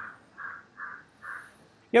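A bird calling four times in the background: short calls about half a second apart, faint against the room.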